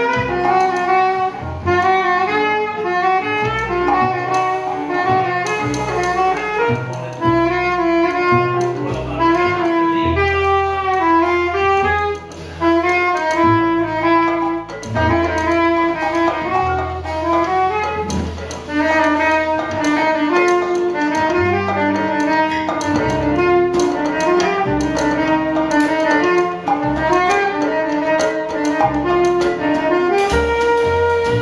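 Live jazz band playing: a soprano saxophone carries a flowing melody over double bass and drums.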